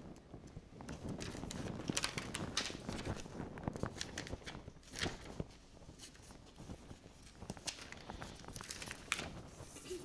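Sheets of paper rustling and being handled, with scattered small taps and knocks.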